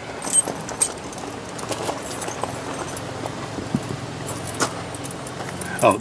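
A bunch of keys jangling and clicking in a hand, in short scattered bursts.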